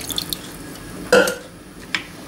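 Juice being poured from a plastic measuring jug into a stainless steel pot of kiwi purée and sugar, a faint pouring sound with a short, loud sound about a second in and a light click near the end.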